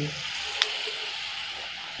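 Steady hiss of background noise, with a single sharp click about half a second in.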